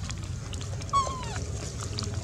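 A macaque gives one short call about a second in, a single note that falls in pitch. Faint scattered clicks sound around it.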